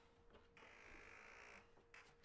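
Near silence: room tone with a faint steady hum, and a soft hiss lasting about a second through the middle.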